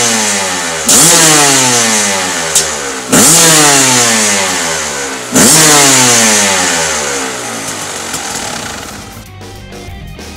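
GAS GAS EC 300 single-cylinder two-stroke engine breathing through a LeoVince X3 slip-on silencer, free-revving at a standstill: three sharp throttle blips about two seconds apart, each winding back down slowly in pitch. It settles toward idle near the end as music comes in.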